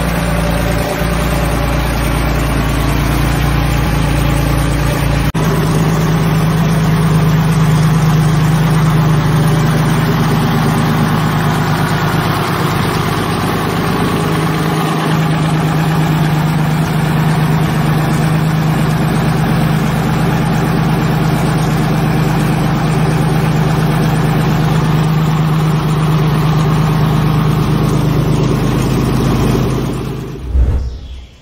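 Siddeley Puma inline six-cylinder aero engine running steadily on a test stand, with an even tone that shifts slightly about five seconds in.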